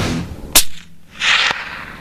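A single sharp crack, like a rifle shot, about half a second in as the intro rock music stops, followed by a short hiss about a second later.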